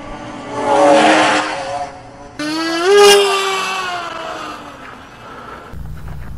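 Two quick passes of a radio-controlled model ultralight's motor and propeller. The second motor note swells and rises in pitch about three seconds in, then falls away as it passes.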